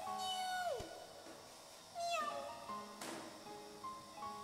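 A cat meowing twice over quiet background music. The first meow is long and holds before falling steeply, and a shorter falling meow comes about two seconds in.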